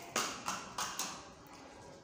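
Four quick light taps and clicks in the first second, from the number slide being handled and swapped in a phone-torch projector.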